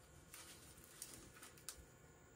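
Near silence: room tone with faint rustling and two soft clicks, about a second in and again shortly after.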